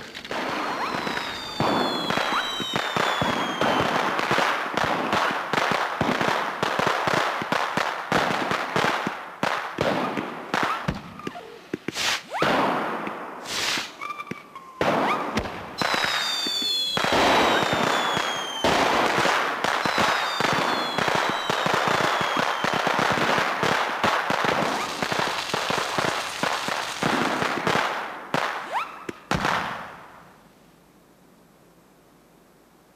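Fireworks going off: continuous dense crackling and popping with sharp bangs, and a few whistles that fall in pitch. The crackle dies away just before the end.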